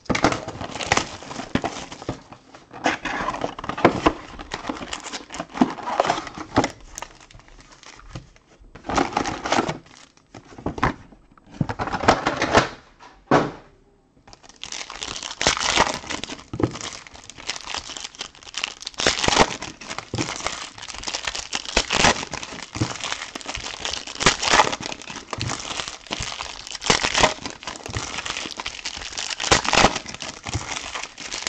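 Plastic wrapping and foil trading-card pack wrappers crinkling and rustling as a new card box is unwrapped and its packs are handled, in irregular bursts with a short lull about halfway through.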